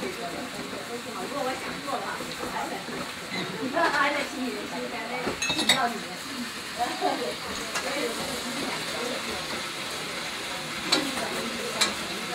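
Food frying in a pan, a steady sizzle under murmured conversation, with a few sharp clinks of dishes.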